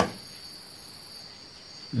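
Desktop PC running with its case open: the power supply fan hums with a steady high-pitched whine over it, and the fan spinning shows the power supply is good. A higher thin tone drops out about a second in, and a brief click sounds at the very start.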